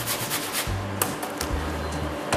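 An apple being grated by hand on the coarse holes of a metal box grater: several short scraping strokes, over background music with a steady bass.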